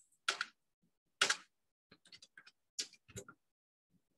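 Typing on a computer keyboard: two louder single keystrokes in the first second and a half, then a quick, uneven run of lighter key taps from about two seconds in.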